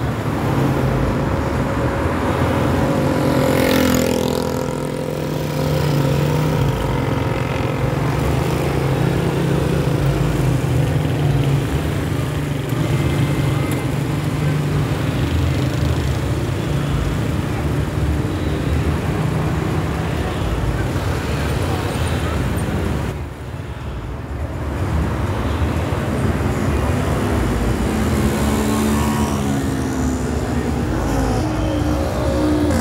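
Street traffic: car and motorcycle engines running and passing on a city avenue, with a steady low engine rumble.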